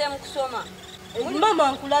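A high-pitched voice, rising and falling in pitch, in two stretches about a second apart.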